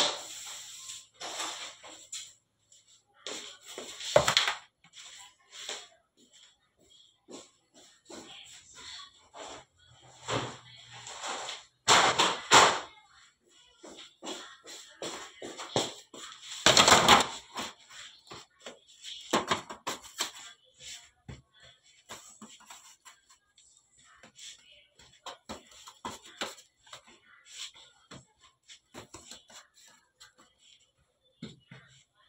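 Metal baking trays clanking and scraping as they are lifted, stacked and set down on a work table, in irregular knocks with louder clatters about four, twelve and seventeen seconds in.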